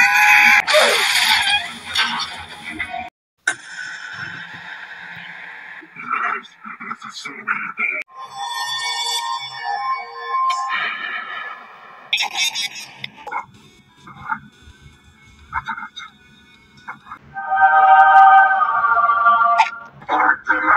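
Animated cartoon soundtrack: a loud, harsh burst of noise in the first three seconds, then a string of short sound effects and character voices with music, ending in a loud held sound with several steady pitches near the end.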